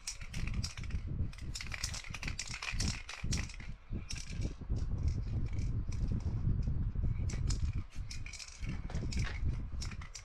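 A sheet of paper being pressed, rubbed and lifted over wet spray paint, making rapid crackling rustles, along with handling of an aerosol spray can. A steady low rumble runs underneath.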